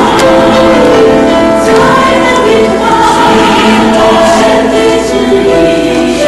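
A mixed church choir singing, the voices holding long sustained notes.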